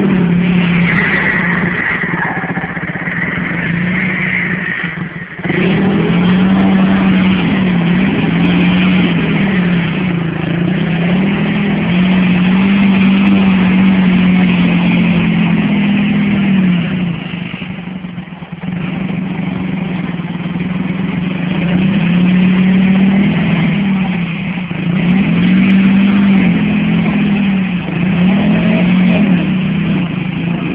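Dinli 450 quad's engine running hard as it is ridden on dirt, its pitch rising and falling with the throttle over and over. The engine backs off briefly about five seconds in and again around eighteen seconds.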